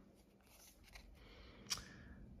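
Near silence at first, then faint handling of glossy trading cards sliding against each other from about a second in, with one brief click near the end.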